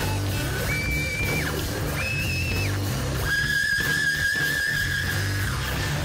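A heavy rock band playing live, led by an electric guitar. The guitar plays high held notes that slide up into pitch and waver, two short ones and then a longer one of about two seconds, over bass and drums.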